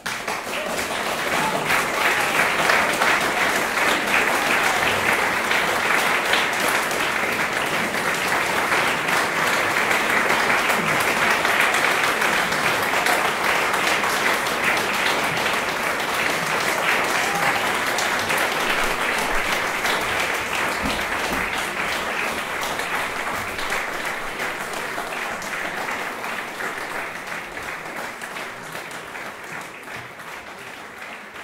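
Audience applauding at the close of a live chamber performance. The clapping breaks out suddenly out of silence, holds steady, then slowly thins and fades over the last several seconds.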